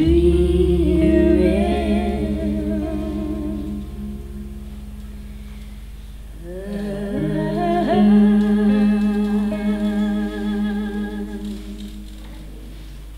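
Women's voices holding long notes in close harmony with vibrato, a low steady tone underneath. Two phrases: the first fades out over a few seconds, and a second swells in about six and a half seconds in and fades near the end.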